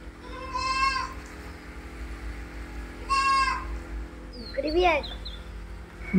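A young goat kid bleating twice: two short, high-pitched calls about two and a half seconds apart.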